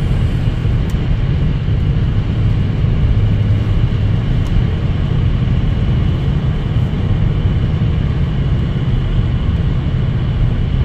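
Steady road noise heard from inside a car cruising at highway speed: a constant low drone of tyres and engine.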